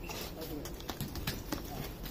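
Cattle hooves knocking on brick paving as the animal walks: irregular, separate clops.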